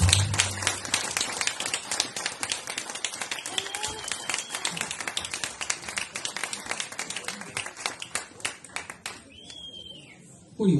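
Audience applauding, a dense patter of hand claps that thins out and stops about nine seconds in. The last low note of the acoustic guitar rings on briefly under the first claps.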